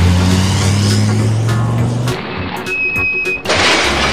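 Added sound effects for a toy truck: a low steady engine hum, rising slightly, that cuts off about two seconds in. Then a few clicks, a short high squeal, and near the end the loud noisy start of a crash effect.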